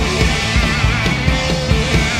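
A live rock band playing loudly, with distorted electric guitars, bass and a steady drum beat, and a wavering high line over it in the middle.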